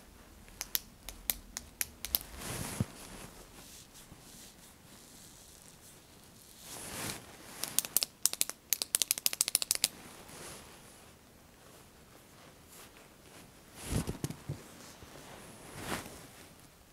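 A retractable pen's push button clicked repeatedly with its end pressed against a person's neck and upper back. There are a few scattered clicks in the first two seconds, then a quick run of about fifteen clicks around the middle, at roughly seven a second. Softer rustling sounds come in between.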